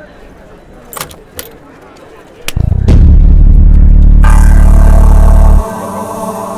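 A motorcycle engine started after a few clicks, running loudly with a deep, steady note for about three seconds before cutting off abruptly. Background music comes in over it.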